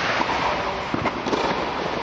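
A few sharp knocks of a tennis ball being struck by a racket and bouncing on the court, over a loud, steady hiss that fills the indoor hall.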